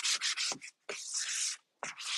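Foam sanding pad scuff-sanding a dry first coat of mineral paint on a cabinet door, a light sanding between coats to knock down the grainy texture. Quick short back-and-forth strokes at first, then a couple of longer passes with short pauses between them.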